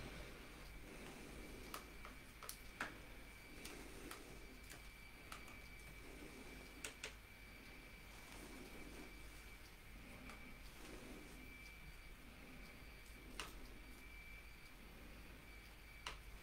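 Near silence: room tone with a faint steady high whine and a low hum, broken by a dozen or so faint, scattered clicks.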